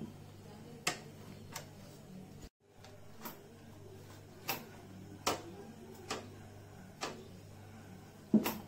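Scattered sharp clicks and taps of hard parts being handled as a knuckle guard is fitted to a motorcycle handlebar, over a steady low hum. The sound cuts out briefly about two and a half seconds in.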